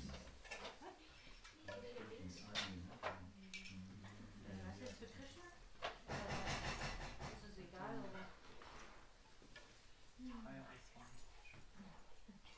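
Quiet room sounds: faint murmured voices, rustling and a few short knocks and clicks of objects being handled and set down.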